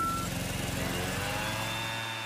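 Truck backing up: a reversing-alarm beep that cuts off a quarter second in, then the vehicle's engine running with a steady hiss and a slowly rising whine.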